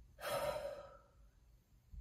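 A woman's audible breath, a sigh lasting about half a second near the start.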